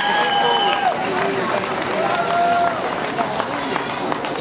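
Concert audience cheering and shouting in a large hall, with long drawn-out calls rising above the crowd hubbub in the first second and again about two seconds in.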